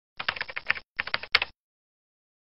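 Keyboard-typing sound effect: a quick run of key clicks in two short bursts, stopping about a second and a half in.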